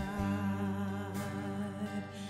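Live worship band playing a slow song: acoustic guitar and band under a sung melody, with long held notes.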